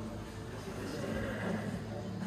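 Indistinct voices in a large room, with no clear words.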